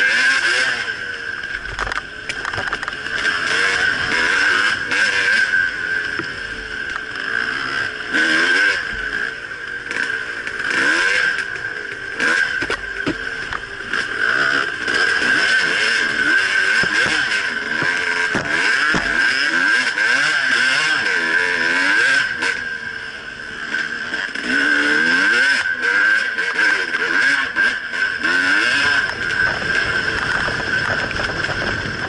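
Two-stroke enduro dirt bike engine heard from an onboard camera, revving up and down continuously as the throttle opens and closes along a trail, with wind and riding noise over it.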